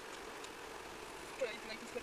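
Steady road noise from a car driving on wet tarmac at about 50 km/h, heard from inside the cabin, with a few short voice-like sounds about one and a half seconds in.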